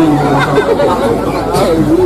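Voices talking, more than one at a time.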